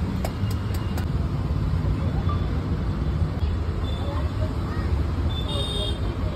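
Steady low rumble of street traffic with voices in the background, and a few quick clicks in the first second.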